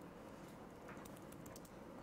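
Faint typing on a computer keyboard: a single key click about half a second in, then a quick run of keystrokes in the second half.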